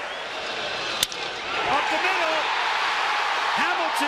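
Ballpark crowd noise from a TV broadcast, broken by a single sharp crack about a second in, after which the crowd gets louder and starts cheering as the ball is hit into the outfield.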